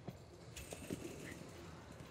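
A few faint thuds of a gymnast's feet striking a double mini-trampoline and its landing mat during a tumbling pass, over quiet arena background.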